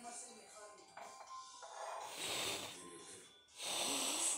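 Kinetic sand being crumbled by hand: two soft, crunchy rustles, one about halfway through and a louder one near the end, over background music with a voice in it.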